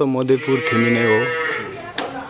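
A man singing unaccompanied, ending a slow phrase on a long held note that fades out about a second and a half in.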